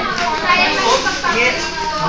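Several young people talking over one another, a busy, overlapping chatter of voices in a room.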